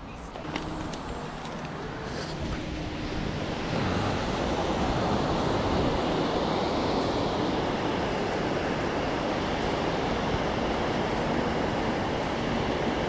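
Ocean surf and wind at the shoreline: a steady rushing noise that builds over the first few seconds and then holds.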